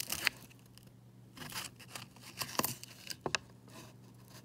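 Paper coin-roll wrapper rustling and crinkling as the roll is handled, with a scattering of light clicks as nickels are fingered and one is slid out of the stack.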